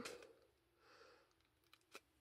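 Near silence, with faint handling noise: a soft rustle about a second in and a small click near the end, as a peel-off sticker sheet is worked with a piercing tool.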